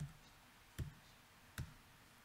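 Three separate keystrokes on a laptop keyboard, about 0.8 s apart, with quiet room tone between them.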